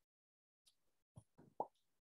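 Near silence, with about four faint, short clicks or taps in the second half.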